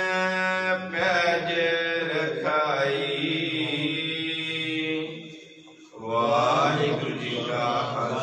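A man's voice chanting a Gurbani verse in long, drawn-out held notes. There is a short pause about five and a half seconds in before the chant resumes.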